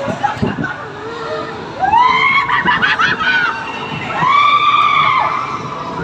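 A rider screaming twice on a moving theme-park ride, two long, high calls of about a second each, over the rumble of the ride and crowd noise.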